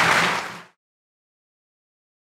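Audience applauding after a speech, fading out quickly about half a second in and leaving dead silence for the rest.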